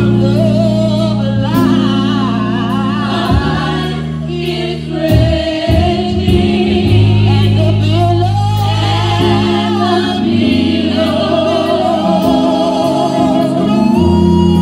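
A group of five women singing a gospel song together, voices sliding and wavering over sustained low chords that change every few seconds.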